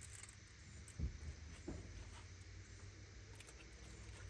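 Gas grill's stainless steel lid lifted open, with a sharp knock about a second in and a lighter one shortly after, over a steady low hum.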